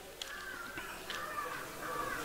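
A bird calling three times in quick succession: one call about a quarter second in, one about a second in, and one near the end.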